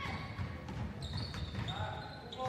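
Faint sounds of a basketball game on a hardwood gym floor: the ball bouncing, with short high squeaks from sneakers.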